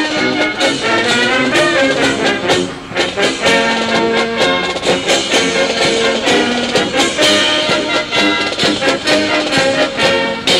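Military band playing brass music, with trumpets and trombones carrying a tune of held notes.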